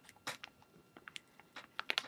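A person biting and chewing beef jerky: scattered short, sharp clicks and mouth smacks, denser in the second half.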